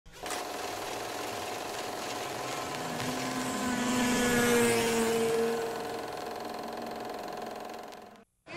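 Whirring and clatter of a vintage film projector running, with a steady hum that swells up about three seconds in and fades out again after about six seconds.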